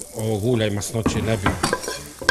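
A metal spoon scrapes and clicks against a nonstick frying pan as fried sausage pieces are spooned out, with a man's voice speaking over it.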